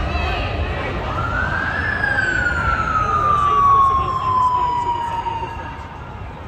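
An emergency vehicle's siren wailing: one slow cycle that rises in pitch for about a second, then falls steadily for three to four seconds. Street noise and voices run underneath.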